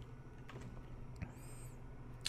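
A few faint computer mouse clicks over a low steady electrical hum.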